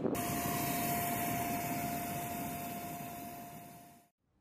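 Aircraft turbine engine running steadily: a rushing roar with a single high whine held on one note. It fades away toward the end.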